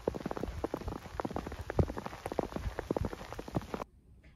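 Rain drops hitting nearby surfaces: a dense, irregular run of small ticks with a few louder hits, cutting off suddenly near the end.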